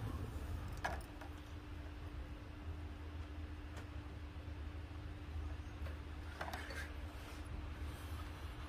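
Quiet kitchen room tone: a steady low hum, with a faint steady tone joining about a second in and a few faint soft clicks.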